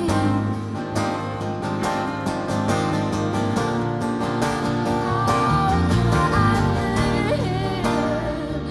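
Live band music: a strummed acoustic guitar over a steady drum beat and bass, with a melody line gliding above.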